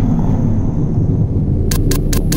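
Steady low electronic rumble of a logo-sting sound effect, with a quick run of sharp clicks starting near the end.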